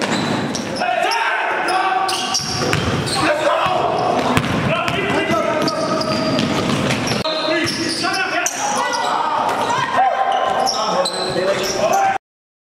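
Live game sound of indoor basketball: several voices calling and shouting at once, with the ball bouncing on the hardwood, echoing in a large gym.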